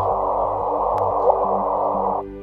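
LIGO's first detected gravitational-wave signal from two merging black holes, turned into sound by shifting it up in frequency: a steady rumbling noise with short rising chirps, a quick "whoop" heard twice.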